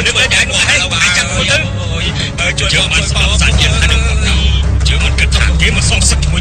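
Film soundtrack: voices over music, with a deep steady rumble coming in about halfway through.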